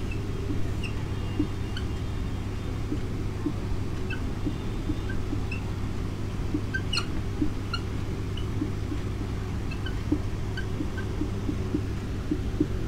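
Marker pen on a whiteboard, giving short faint squeaks and ticks as it writes, scattered through the whole stretch, over a steady low hum.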